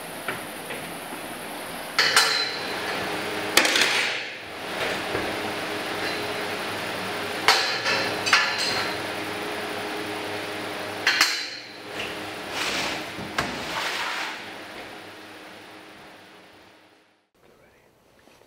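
Steel carcass hooks clanking and scraping against an overhead steel rail in a walk-in chiller, several sharp metallic knocks a second or more apart. Under them runs the chiller's refrigeration unit, a steady hum. All of it fades away near the end.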